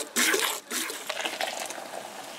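Milk hissing into a stainless steel bowl: a hand-milking squirt from a cow's teat near the start, then a steadier stream of milk pouring.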